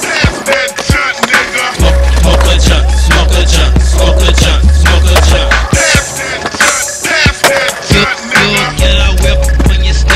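Skateboard sounds, with wheels rolling on concrete and the sharp clacks of board pops and landings, over a hip hop beat with a heavy bass line. The bass drops out for a few seconds past the middle, then comes back.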